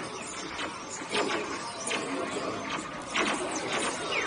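Space Ranger Spin ride-car noise with a run of short clicks and zaps from the mounted laser blasters and targets, loudest about a second in and again about three seconds in.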